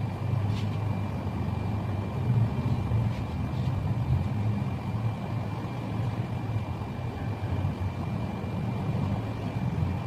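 Steady low rumble with a thin, steady high tone above it, and a few faint clicks in the first four seconds.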